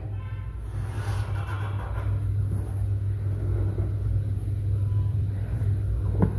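A steady low background hum or rumble, with no speech over it.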